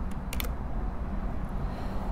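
A few short, sharp clicks, a cluster of them in the first half second, as the presentation slide is advanced, over a steady low rumble of room noise.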